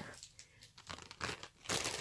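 Plastic packaging of a marker set crinkling as it is handled: a few faint crackles, then a louder rustle near the end.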